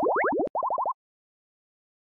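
Cartoon-style pop sound effects for an animated logo: a rapid run of rising bloops, then after a tiny break about five quicker rising bloops, all within the first second.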